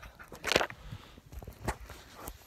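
Handling and movement noise as the camera is picked up and moved over dry, sandy ground: a brief rustling scrape about half a second in, then a few light clicks.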